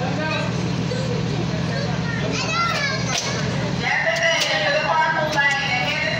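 Children's voices chattering and calling in the background, growing louder and higher about two-thirds of the way in, over a steady low hum. A few sharp clicks come near the middle and toward the end.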